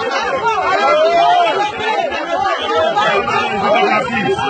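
Several people shouting and talking over one another at once, raised voices in a scuffle.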